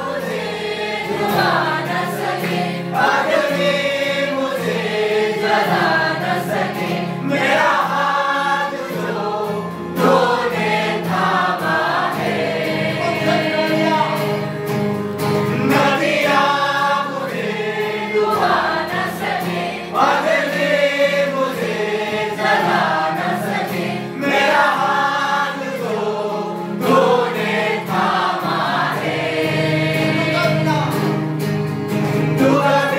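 A choir singing a Christian worship song over steady instrumental backing.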